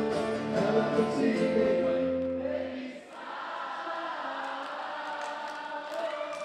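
Live acoustic guitars and voices holding a chord that stops about halfway through, after which a crowd of voices carries on singing together, more softly.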